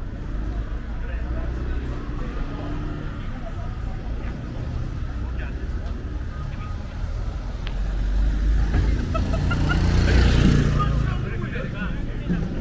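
Night city street traffic, with a steady low rumble of cars. A car passes close by about ten seconds in, its engine and tyre noise swelling and then fading. Passers-by talk faintly.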